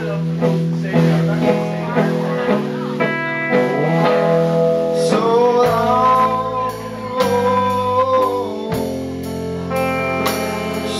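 Live band music: electric guitars and a drum kit playing a slow song. In the second half a voice holds a long, wavering note.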